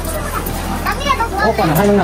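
Children's voices talking, only speech.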